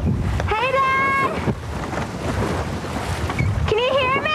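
Wind rumbling on the microphone during parasailing, with a person shouting twice: a long, high held whoop about half a second in, and a rising, wavering yell near the end.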